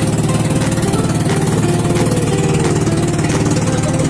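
Small engine of a bangka (outrigger boat) running steadily under way, with a fast, even chugging beat.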